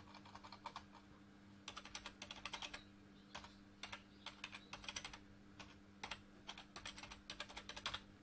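Computer keyboard being typed on in irregular runs of key clicks, over a faint steady low hum.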